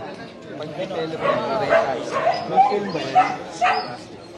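Indistinct voices of several people talking at a distance, in short overlapping bursts.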